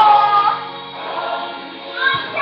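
Gospel-style worship music with a choir singing. A held sung note opens it, then the singing eases off and grows softer.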